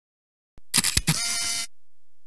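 A short mechanical-sounding sound effect out of dead silence: a click, then a burst of clicking and rasping noise about a second long, and a last faint click.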